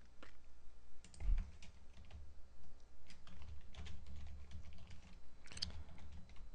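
Typing on a computer keyboard: irregular key clicks while a login is entered, with a dull thump about a second in.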